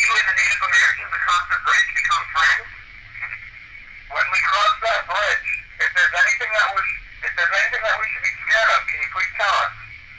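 Recorded speech played back through a small voice-recorder speaker, thin and tinny like a telephone, in phrases with a pause about three seconds in.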